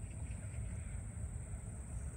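Crickets trilling steadily, a continuous high-pitched sound, over a low rumble.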